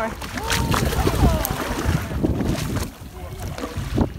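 Hooked red snapper splashing at the water's surface beside the boat, over a steady low rumble of wind on the microphone and the boat.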